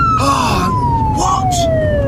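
Police car siren sounding a single wail that glides slowly down in pitch, over a steady low car-engine hum.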